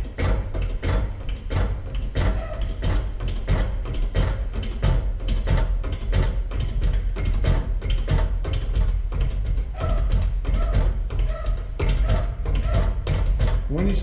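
Hydraulic shop press being worked to bring its ram down: a steady run of rapid mechanical clicks and knocks over a low rumble, as it presses a pipe cap into polyurethane to dome a steel concho.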